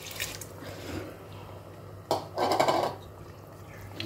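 Rice being poured from a bowl into tomato gravy in a pressure cooker, a wet sliding and splashing sound, loudest in a burst a little after two seconds in.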